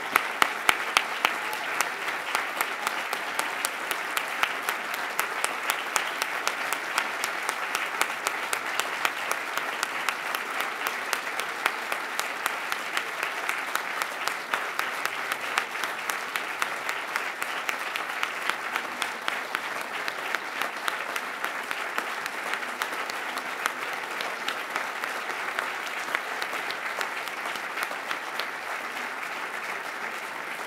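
Large audience applauding steadily: many hands clapping in a dense patter, with a few loud close claps at the start, easing slightly toward the end.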